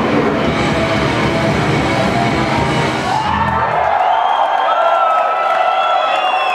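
Grindcore band playing live at full tilt, with blasting drums and distorted guitars, until the song ends on a final hit a little over halfway through. Crowd cheering follows, with high held and gliding tones over it.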